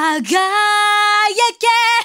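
A female J-pop singer's voice, sung in Japanese with no accompaniment audible: a note slides up into a long held tone, breaks off briefly, and comes back on a higher note near the end.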